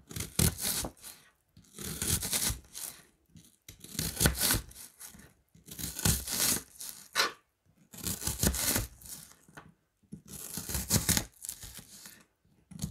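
A kitchen knife slicing through a raw onion on a plastic cutting board, cut by cut into half-moon slices. Each slice is a crisp, tearing crunch about a second long as the blade passes through the layers. There are six cuts, about one every two seconds, with near silence between them.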